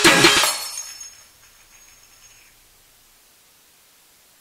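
An electronic trap track ending: the beat cuts off about half a second in and a bright, hissy tail dies away over the next second. A faint high tone lingers briefly, then there is a quiet gap before the next track.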